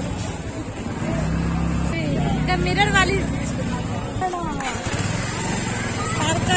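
A vehicle engine runs close by in a busy street, a steady low hum that starts about a second in and fades out after about four seconds, with passersby's voices over it.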